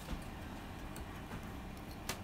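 A handful of faint, light clicks and ticks as a racket string and a metal flying clamp are handled on a portable badminton stringing machine, over a low room hum.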